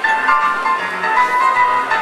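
Loud live concert music in an arena, recorded on a phone in the crowd: a melody of high held notes changing every fraction of a second over a fuller band sound.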